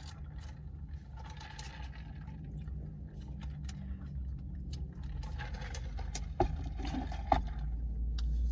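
A car engine idles with a low, steady hum while a drink is sipped through a straw. About halfway in the hum grows louder, and rustling and two sharp knocks follow as things are moved about inside the car.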